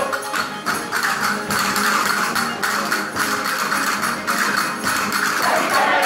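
Spanish folk music: a mixed group of men and women singing together over strummed guitar-type strings, with a steady clicking hand-percussion rhythm running through.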